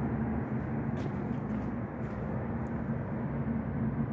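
Steady low hum and rumble of city background noise on a downtown street at night, with a faint click about a second in.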